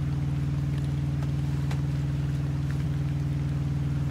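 A steady low droning hum with a fast, even pulse, running unchanged throughout.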